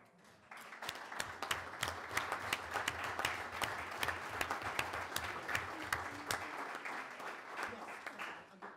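A roomful of people applauding, the clapping starting about half a second in and dying away near the end.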